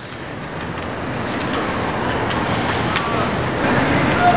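Outdoor street ambience: a steady, traffic-like noise that fades in from silence and slowly grows louder, with faint voices in the background.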